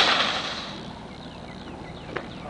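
A single loud bang in the back of a van as something is shoved into its cargo area, dying away over about half a second.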